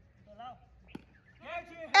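A cricket bat striking the ball once, a single short knock about halfway through, between faint distant calls; a man's loud shouting starts near the end as the batsmen run.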